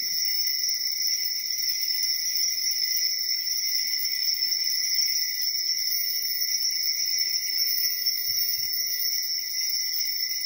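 Altar bells rung without pause by the kneeling server during the elevation at the consecration: a steady, high trilling ring that does not break.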